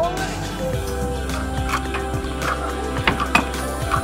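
Background music with held tones over a steady bass, with a few sharp clicks in the second half.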